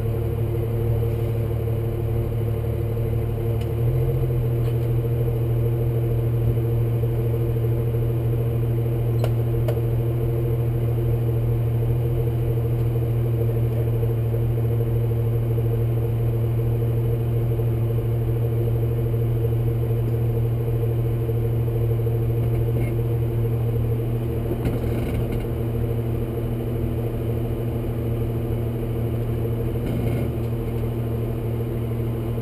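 Jeep engine idling steadily while stopped, a low even hum with its note stepping up slightly about four seconds in.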